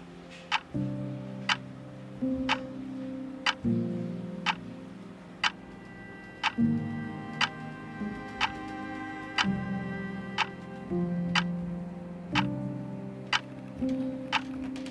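A clock ticking steadily about once a second over soft background music of sustained chords that change every few seconds.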